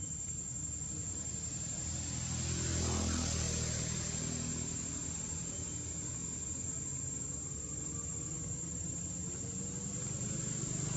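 A motor vehicle passing by, swelling to its loudest about three seconds in and then fading, over a steady high-pitched insect drone and a low rumble.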